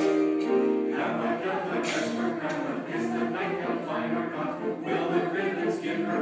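Mixed choir singing a Christmas choral piece: a held chord, then a quicker, busier passage from about a second in.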